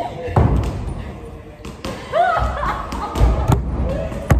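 Bodies thudding and scuffling on a padded ring mat as two people wrestle, with several heavy thuds. A woman's voice laughs in the middle of the scramble.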